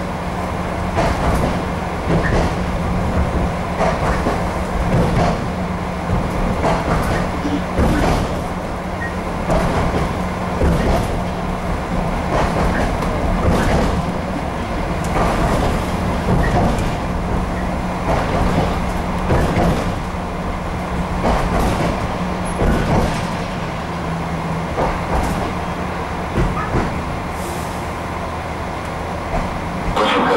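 Running noise of an RA2 diesel railbus heard from inside: a steady engine drone under the rumble and irregular knocks of the wheels on the rails. The steady engine note drops away near the end as the railbus slows for a station.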